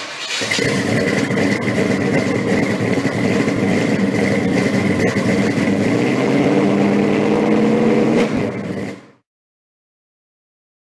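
Car engine starting with a sharp burst, then running loudly with a steady high-pitched whine alongside, its revs rising a little in the later seconds before it dies away about nine seconds in.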